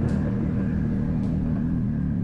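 A steady, deep rumble with almost nothing higher above it, the low drone of a soundtrack intro.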